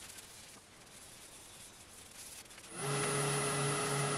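Paper towel rubbing finish onto a yew goblet on a wood lathe, a faint, even rubbing hiss. About three seconds in, a much louder steady lathe motor sound cuts in, a low pulsing hum with a high whine.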